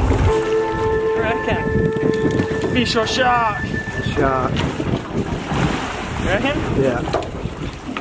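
Wind buffeting the microphone and water noise on a boat at sea. A steady pitched whine runs for the first three seconds or so, and brief wavering voice sounds come about three seconds in and again near the end.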